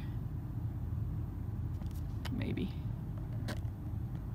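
Steady low room hum, with a few light clicks and taps as the recording phone is handled and moved closer, and a brief murmur of voice about halfway through.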